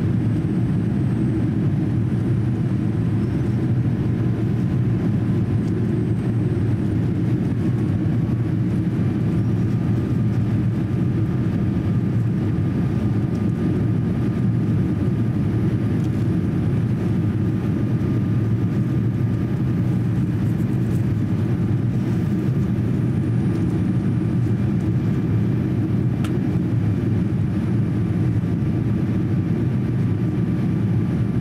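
Steady cabin noise of a Boeing 787-8 airliner in flight: a deep, even rush of airflow and engines. A faint high whine joins in about eight seconds in.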